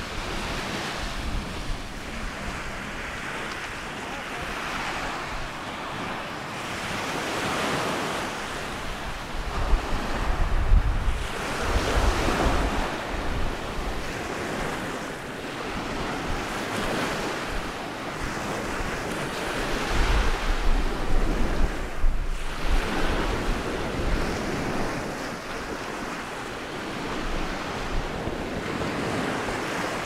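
Small Mediterranean waves breaking and washing up the sand shore, swelling and fading every few seconds. Wind buffets the microphone in low gusts about a third and two-thirds of the way through.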